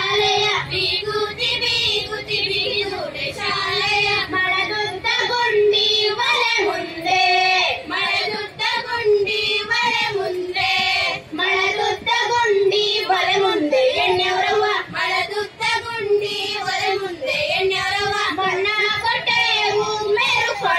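A child's and women's voices singing a Kannada folk song in continuous sung phrases.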